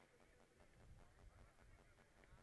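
Near silence, with only faint low background noise.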